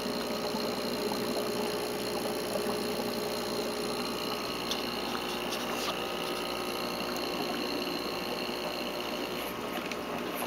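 Aquarium air pump running with a steady hum, feeding air to the algae scrubber in the pond.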